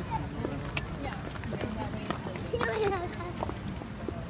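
Chatter of a crowd of people, with one voice rising over it about two and a half seconds in, and scattered short taps and clicks.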